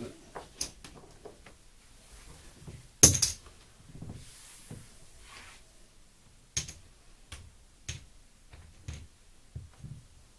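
Casino chips clicking and clacking as they are handled and stacked. There is one louder clatter about three seconds in, then several single clicks.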